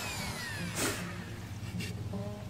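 Power drill with a wire wheel brush spinning down freely once lifted off the wood: a falling whine over about the first second, with a short scuff near the end of it.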